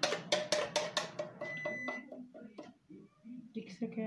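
Quick clinking knocks, about five a second, as a red container is knocked and scraped empty into a plastic blender jug; they stop about a second and a half in. A short high electronic beep follows.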